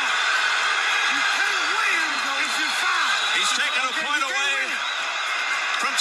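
Men's voices talking over the steady noise of an arena crowd at a televised boxing match.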